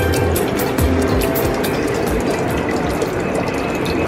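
Steady rush of water running from a public drinking fountain's brass spout into a water bottle, with background music and a regular beat playing along.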